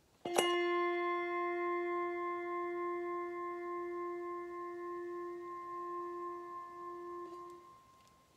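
A brass handbell struck once, ringing with several clear overlapping tones that slowly die away over about seven seconds.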